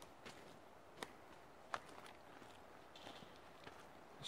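Near silence with faint footsteps on a dirt forest track, a soft step about every three-quarters of a second.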